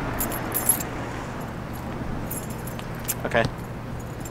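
Light metallic jingling in two short bursts, about half a second in and again past two seconds, over steady background hum.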